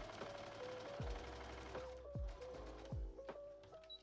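A Brother XR3340 sewing machine runs a long basting stitch as a rapid, even ticking, stopping about halfway through. Soft background music with a deep kick drum about once a second plays throughout.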